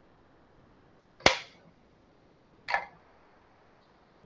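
Two short, sharp sounds about a second and a half apart, the first louder.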